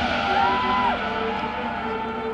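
High school marching band holding soft, sustained chords just after a passage of mallet percussion and bells has ended. A brief pitched glide rises, holds and falls over the chord about half a second in.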